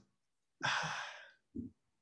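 A person sighing: one breathy exhale of under a second, fading as it goes, followed by a brief low vocal sound.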